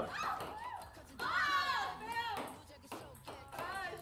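Young women's high-pitched excited voices: a few short exclamations that rise and fall, the longest about a second in, fairly quiet.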